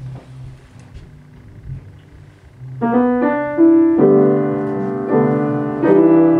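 Grand piano starting a slow introduction about three seconds in: a few held chords, a new one struck roughly every second. Before it, only quiet room sound.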